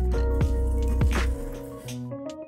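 Background pop music with a steady kick-drum beat.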